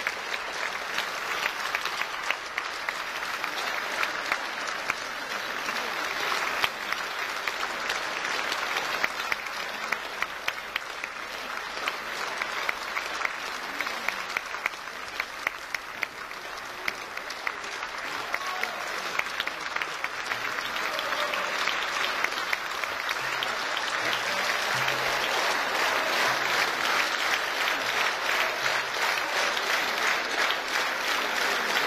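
Concert audience applauding, a dense patter of many hands clapping that swells louder over the last third.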